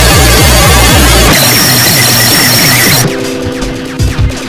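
Loud, heavily distorted electronic music and noise, with about four falling bass sweeps a second, giving way about a second in to a harsh hiss with high whistling tones. Near three seconds in it turns quieter, to a steady low drone with small clicks.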